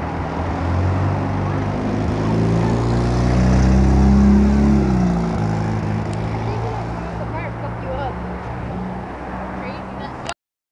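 A motor vehicle engine running close by, growing louder to a peak about four seconds in and then easing off again, as a vehicle passing.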